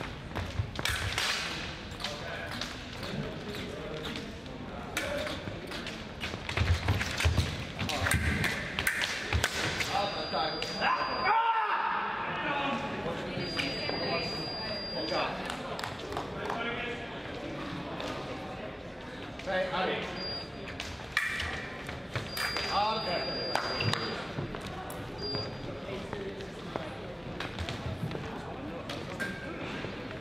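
Indistinct voices and scattered thuds and knocks, echoing in a large sports hall.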